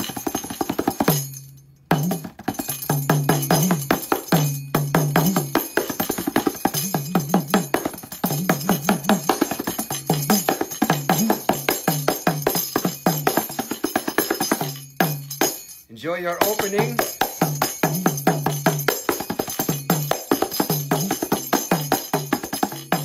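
Kanjira, the South Indian frame drum with a lizard-skin head and a single jingle, played with the fingers in a fast, continuous run of strokes. Its low tones shift in pitch from stroke to stroke. The playing stops briefly twice, about a second in and again around fifteen seconds.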